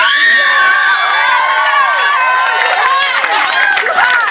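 Audience cheering and whooping: many voices overlapping in high, sliding calls, with clapping coming in near the end.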